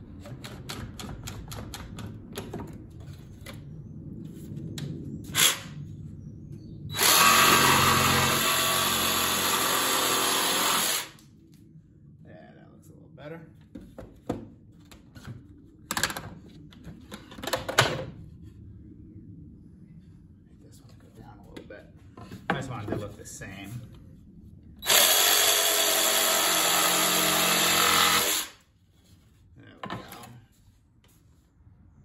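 Bar clamps ratcheted tight with a rapid run of clicks, then a cordless jigsaw cutting plywood in two steady runs of about four seconds each, trimming an uneven edge. Scattered knocks of handling come in between the runs.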